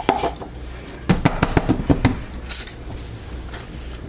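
Plastic soap loaf mould knocked against a glass cooktop: a couple of clicks, then about six sharp knocks in quick succession within a second, followed by a brief scrape.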